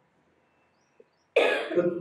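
A man coughs once, close into a handheld microphone, about a second and a half in, after a near-silent pause.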